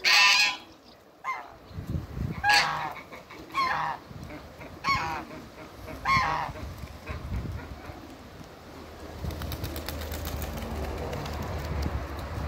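African geese honking: a loud honk right at the start, then a honk roughly every second and a quarter for the first six seconds or so, after which the calling stops.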